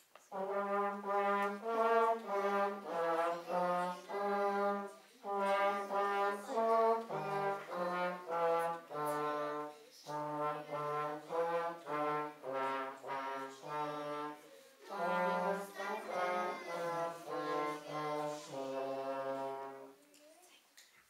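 A small children's brass ensemble of trumpets, tenor horns, baritones and trombones playing a slow tune in chords, note by note. It plays in phrases of about five seconds with short breaths between them, and stops just before the end.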